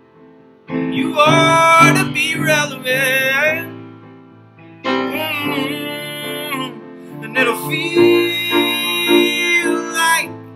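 A man singing a song live, three phrases over a steady instrumental accompaniment, with short gaps between the phrases.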